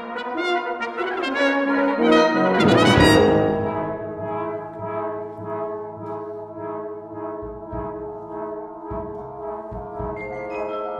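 Brass band playing a contemporary piece: a busy, rising passage swells to a loud peak about three seconds in, then the band settles into sustained chords at a lower level.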